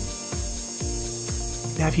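Background music over a benchtop lathe drilling the axle hole in a solid brass flywheel.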